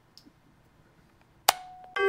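Quiet room with one sharp knock about one and a half seconds in, ringing briefly on a single note, like a hard object being tapped or set down.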